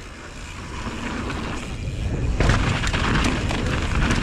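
Wind rushing over the camera microphone and mountain-bike tyres rolling over rock and dirt on a steep descent, growing louder as the bike gains speed and turning rougher and more rattly about two and a half seconds in.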